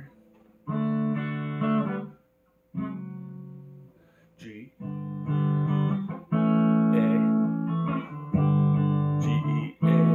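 Clean electric guitar strumming chords, each let ring for a second or two with short breaks between: F sharp minor, then moving on to G.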